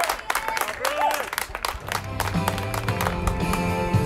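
Claps and shouting voices, then music with guitar starts about two seconds in and carries on.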